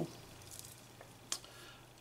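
Quiet handling of a needle and embroidery thread as the thread is drawn out, with one short click a little past halfway.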